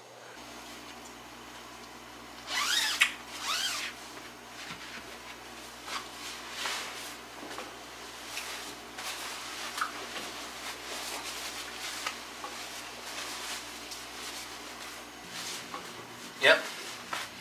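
Rustling and scraping of a Zpacks 20°F down sleeping bag's fabric shell as a person climbs into it on a bed, in many small irregular strokes over a steady low hum. Two brief pitched sounds come about three seconds in.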